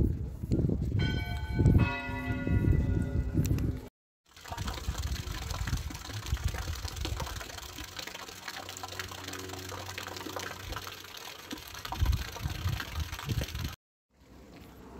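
A church bell rings for a few seconds over loud low thumps. After a brief silent cut comes a steady even hiss, with a faint low hum partway through.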